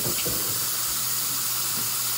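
Steady hiss of water running from a bathroom tap into the sink.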